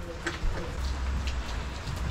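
Steady rain falling: an even hiss with faint scattered drop ticks.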